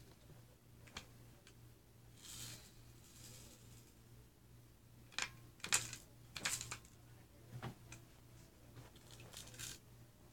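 Faint handling noise: scattered sharp clicks and light rattles of small hard objects being moved about, busiest and loudest in a cluster about five to seven seconds in, over a steady low hum.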